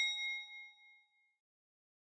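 A bright, bell-like ding sound effect ringing out and fading away over about the first second and a half.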